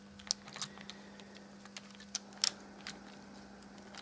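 Light, irregular clicks and taps as a mostly metal H0-scale Märklin BR 01 model steam locomotive and its tender are set down and worked onto the track rails by hand.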